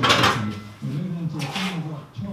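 A man's voice talking indistinctly, with a metallic clatter near the start as a loaded barbell is set back into a squat rack.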